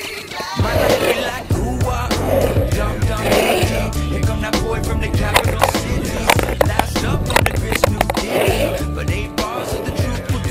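Longboard wheels rolling and sliding on coarse asphalt, heard as a steady road rumble with repeated scraping sweeps, with music underneath.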